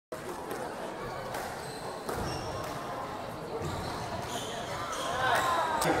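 Squash ball struck by rackets and knocking off the court walls and floor during a rally, sharp knocks every second or so, echoing in the hall.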